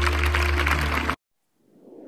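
Audience applauding over background music, cut off suddenly about a second in. A faint rising whoosh starts near the end.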